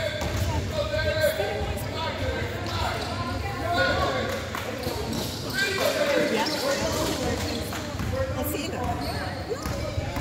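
Basketball bouncing on a hardwood gym floor during play, with players' and onlookers' voices calling out, all echoing in the large hall.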